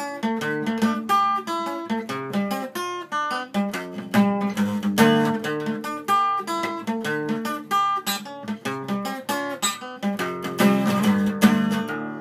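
Steel-string acoustic guitar in drop D tuning playing a repeating riff of quickly picked single notes mixed with chords, with one wrong note slipping in. It closes on a chord left ringing.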